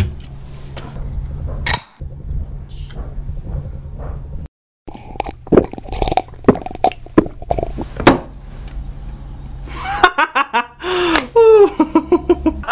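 Aluminium soda can opened with a sharp crack, then a run of short gulping and swallowing sounds as it is drunk from. Laughter comes near the end.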